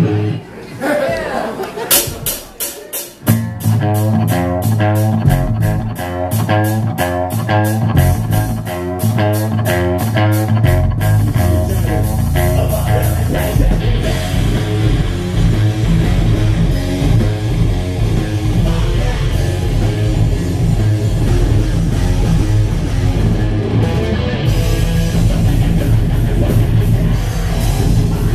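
Live heavy metal band starting a song: a steady rhythm of sharp hits and a distorted electric guitar riff begin about two to three seconds in, and the full band with heavy low drums and bass comes in around eleven seconds and plays on loudly.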